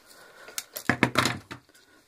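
Pliers and a small metal rivet clicking and clinking as a crookedly set rivet is pried off a strap. Several sharp metallic clicks come between about half a second and a second and a half in.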